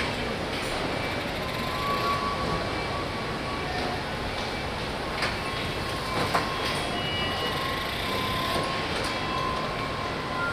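Car assembly hall noise: a steady din of machinery with a faint whining tone that comes and goes, and a couple of short knocks around the middle.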